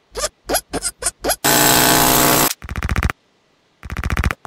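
Cartoon sound effects of a horn being fitted to a bicycle. A string of short rattling bursts is broken by one loud, harsh noise of about a second near the middle.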